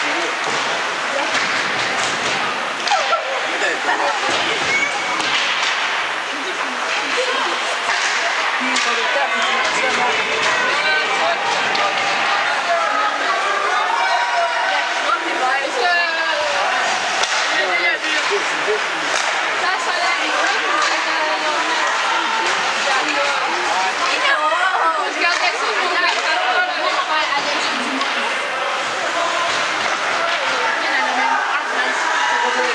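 Indistinct, overlapping chatter of spectators in an ice rink, at a steady level.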